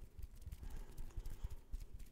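Fingertips tapping quickly and unevenly close to a microphone, making many small dull knocks.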